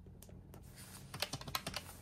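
Keys of a round-keyed desktop calculator clicking in a quick run in the second half, as a subtraction of 10 is keyed in.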